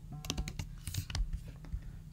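Typing on a computer keyboard: an irregular run of key clicks through the first second and a half, thinning out towards the end.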